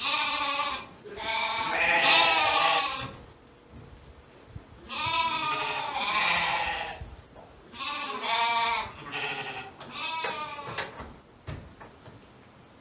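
Shetland sheep and lambs bleating, about six calls in a row, some long and wavering, the longest two lasting around two seconds each.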